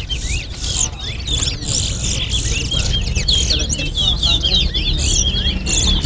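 Caged towa-towa finches (chestnut-bellied seed finches) singing a fast, unbroken run of twittering chirps and slurred whistled notes, in a song-count contest.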